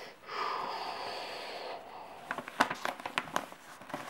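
A long breathy hiss, then from about two seconds in sheet paper crackling and crinkling in sharp bursts as a folded paper plane is opened out by hand.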